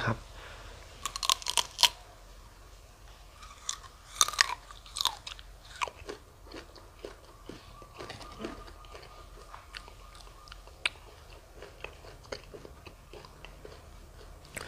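A person biting into a raw prickly pear cactus pad and chewing it. There are crisp crunches in the first couple of seconds and again a few seconds later, then softer, scattered chewing clicks.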